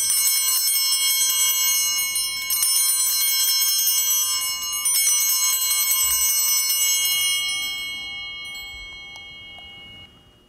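Altar bells (Sanctus bells) rung three times, about two and a half seconds apart, at the elevation of the chalice after the consecration. They give a bright, high ringing of many tones that dies away over the last few seconds.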